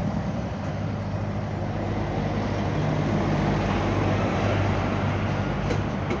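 Vehicle engine running close by in street traffic: a steady low hum that grows a little louder around the middle.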